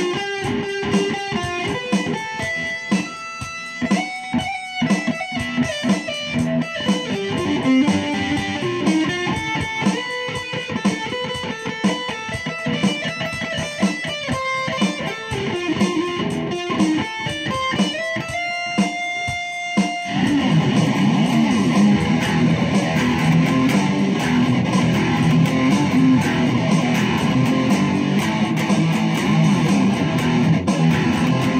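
Electric guitar playing heavy metal: quick picked single-note riffs and melodic lines for about twenty seconds, then an abrupt switch to louder, denser chord riffing.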